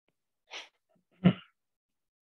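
A man's quick breath in about half a second in, then a single short, sharp explosive burst from the throat, the loudest sound here.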